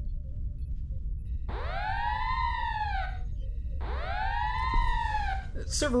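Red-alert alarm siren sounding twice, each call rising and then falling in pitch over about a second and a half, over a steady low rumble.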